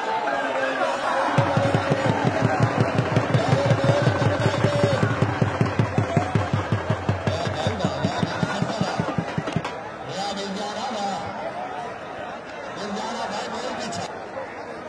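Dhol drum beaten in a fast, steady rhythm that stops suddenly about ten seconds in, with a crowd shouting and chattering over it.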